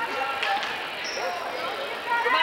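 Indistinct voices and shouts in a gymnasium, with a basketball bouncing on the hardwood court a few times around half a second in and a brief high squeak about a second in.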